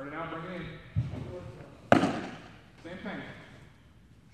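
A pitched baseball smacks sharply into a catcher's leather mitt about two seconds in, the loudest sound, after a duller thump about a second in. Indistinct voices are heard before and after.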